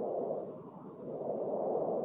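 Breathing on a computer microphone: a soft rushing noise that cuts in suddenly out of silence and swells twice.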